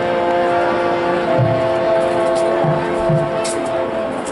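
High school marching band playing long held brass chords, with a few low drum hits under them.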